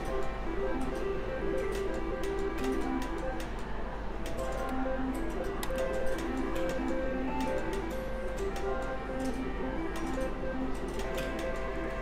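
Five-reel slot machine spinning its reels with a run of ticks, over melodic electronic tones and chimes from slot machines. Near the end a small win is being counted up on the machine.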